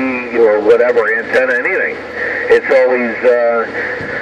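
A voice coming through a two-way radio's speaker, thin and narrow in tone with a steady hiss of static under it.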